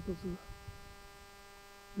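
Steady electrical hum, a ladder of fixed tones that does not change, with a faint low rumble beneath it; a voice trails off in the first half-second.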